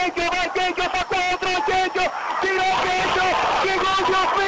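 Male football commentator narrating a play rapidly and without pause in Spanish.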